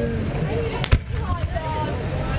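A single firework shell bursting with a sharp bang about a second in, over the chatter of a crowd of spectators.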